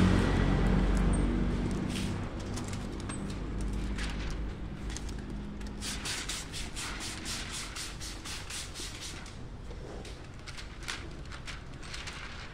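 Plastic window tint film crackling as it is handled and its backing liner peeled away: many quick, sharp crackles at an uneven pace, thinning out near the end. A low rumble fades away in the first couple of seconds.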